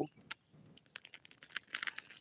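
Faint, scattered clicks, more of them in the second half.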